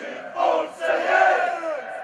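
Football supporters chanting in unison in the stands, in two sung phrases that swell and fade.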